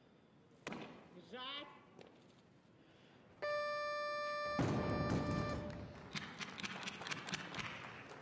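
A short shout near the start, then the referees' down-signal beep sounds as one steady tone for about two seconds. Partway through the beep the loaded barbell is dropped onto the wooden platform with a heavy thump, and applause follows.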